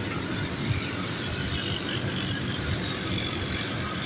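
Steady hum of city traffic, with no separate events standing out.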